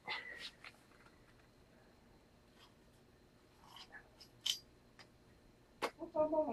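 Quiet handling noises with the drill not running: a few faint rustles and soft knocks, and a sharp click just before the end.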